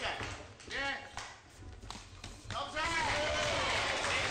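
Arena crowd at a cage fight: voices shouting over a steady crowd din, which drops away in the middle and swells again near the end. There are a couple of sharp knocks in the quieter stretch.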